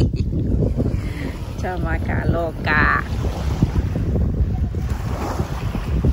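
Wind buffeting the phone's microphone, a steady low rumble throughout, with brief voice sounds about two to three seconds in.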